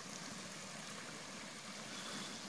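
Shallow forest creek flowing over a small riffle of rocks: a faint, steady rush of water.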